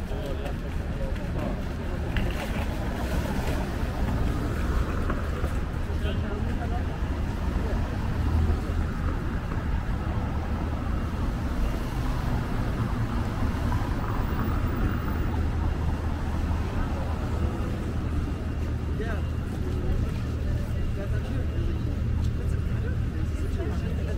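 City street ambience: a steady low rumble of car traffic, with passers-by talking.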